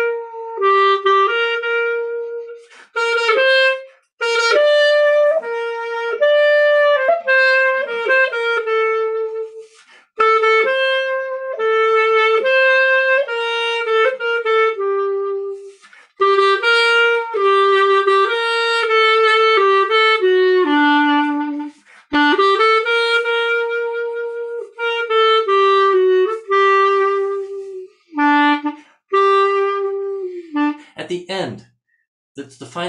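Solo B-flat-style soprano clarinet playing a slow melody in short phrases, with brief breaths between them. Several notes slide downward into the next tone, and the last phrase falls away at the end.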